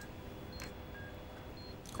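Hospital patient monitor beeping softly: short beeps about every half second, alternating between a lower and a higher pitch, over a faint steady hum.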